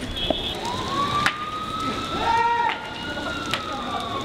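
A siren wails in one slow rise and fall, over street noise. Several sharp cracks sound through it, and a voice calls out briefly in the middle.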